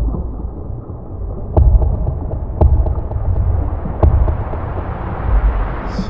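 A deep low rumble with five heavy booming thuds at uneven intervals, roughly one a second, the loudest about a second and a half in.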